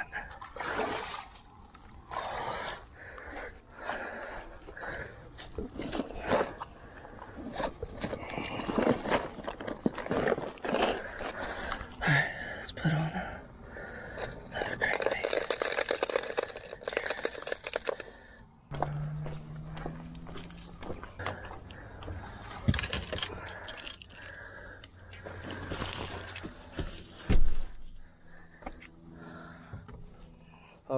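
Close handling noises: rustling and scraping of clothes and gear and footsteps on grass, with a person breathing. A steady low hum comes in about two-thirds of the way through, and there is a loud thump near the end.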